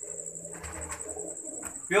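Domestic pigeons cooing quietly in a small enclosed loft.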